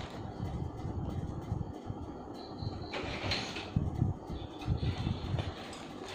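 Plastic packaging and a paper shopping bag being handled, with rustling and crinkling and uneven low thumps.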